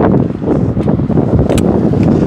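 Wind buffeting the microphone: a loud, gusty low rumble. A single sharp click comes about one and a half seconds in.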